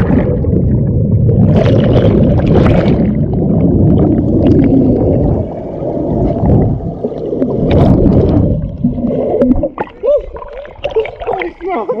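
Underwater sound through a submerged camera microphone: a loud, muffled rushing and rumbling of water churned by swimmers and by the carbon dioxide bubbles streaming up from dry ice. About ten seconds in the rumble stops as the camera comes up, leaving splashing and a voice.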